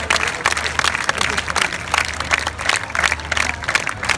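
Crowd applauding, many hands clapping at once, with voices mixed in.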